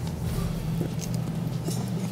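Room tone: a steady low hum with faint background noise and a few faint ticks.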